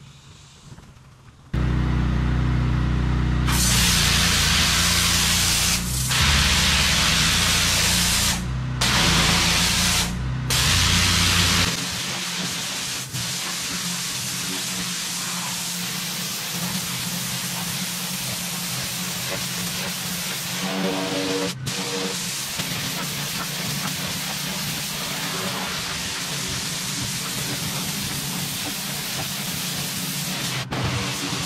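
Pressure-washer wand spraying high-pressure water onto a concrete entry slab: a steady loud hiss that starts a few seconds in and cuts out briefly a few times as the trigger is let go. Background music with a heavy bass plays under it for roughly the first ten seconds.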